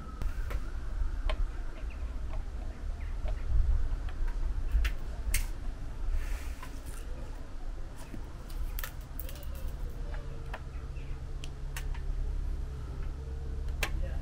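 Scattered light clicks and knocks of a plastic solar security light being handled and hooked onto its wall bracket, over a low rumble.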